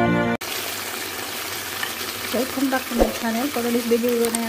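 Music cuts off sharply just after the start, then marinated chicken pieces sizzle steadily as they fry in oil in a frying pan. A low voice comes in over the sizzle from about halfway through.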